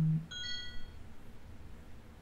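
A short electronic notification chime: several steady high tones sounding together for well under a second, right after a man's voice trails off.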